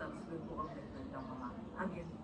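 Speech only: a man talking in a played-back interview, fairly quiet.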